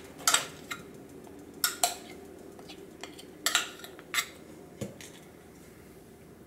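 A spoon clinking and scraping against a glass measuring cup and a stainless steel mixing bowl while melted white chocolate is scraped out of the cup: about eight short, scattered clinks.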